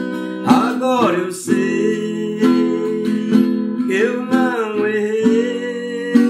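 Acoustic guitar strummed steadily under a man's singing voice. The voice holds long notes that slide in pitch, once early on and again about four seconds in.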